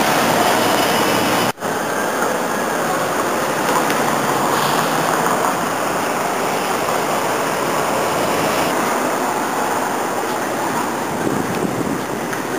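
Steady city street noise: passing traffic and wind rushing on the microphone, with a brief dropout about one and a half seconds in.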